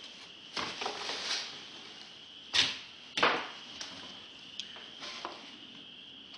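Hardened Sculptamold being pried and broken by hand off pink foam insulation board: scratchy scraping about a second in, then two sharp cracks a little past two and a half and three seconds in, and a few small clicks. Laid over wet primer, it is bonded so firmly that it breaks rather than peels off.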